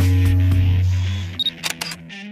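Logo intro music: a heavy, steady bass tone with beat-like hits that cuts off about one and a half seconds in. It is followed by a short high beep and a quick run of sharp camera-shutter clicks.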